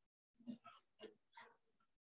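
Faint rubbing of a whiteboard duster wiped back and forth across the board, four or five short strokes in quick succession.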